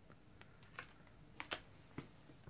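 A few faint, light clicks and taps of a tarot card being handled and laid down on a spread of cards, about five in two seconds, the sharpest about one and a half seconds in.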